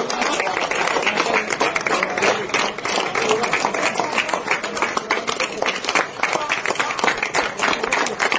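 A crowd of people clapping their hands, many quick, uneven claps running together without a break.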